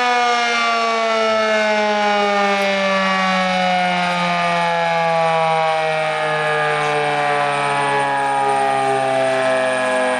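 Federal Signal Model 5 outdoor warning siren sounding a loud, sustained blast of several tones together, its pitch sliding slowly and steadily downward.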